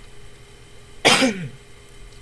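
A single cough about a second in, short and sharp with a falling tail, over a faint steady hum.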